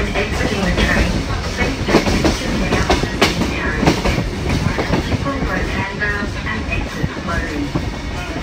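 Heritage passenger train running along the track, heard from inside a carriage with the windows open: a steady rumble from the wheels and carriage, with irregular sharp knocks from the running gear.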